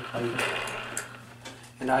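Plastic Bean Boozled game spinner clicking as it spins, fading as it slows. A voice starts near the end.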